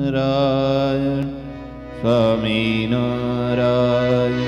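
Male voice singing a Hindu devotional chant in long, wavering held notes over a steady drone. The singing drops away about a second and a half in, and a new phrase begins at about two seconds.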